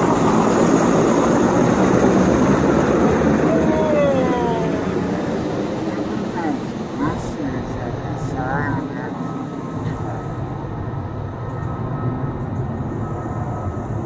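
Helicopter flying low overhead: a loud rotor and engine noise that sets in suddenly, is strongest over the first few seconds and then slowly fades as it moves away.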